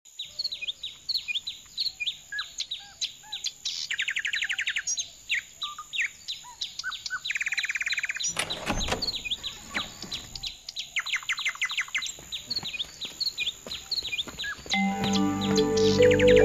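Many birds chirping, a dense chorus of short calls broken by several rapid trills. There is a brief rushing noise about halfway, and music starts shortly before the end.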